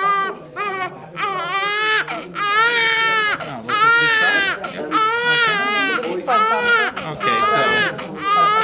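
A 17-day-old baby crying hard as its clubfeet are handled and taped: a string of wails, most about a second long, with quick breaths between.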